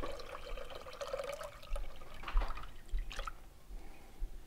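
Juice from a can of sliced beets pouring into a saucepan of vinegar, sugar and water, then a few separate splashes in the second half as the beet slices drop into the liquid.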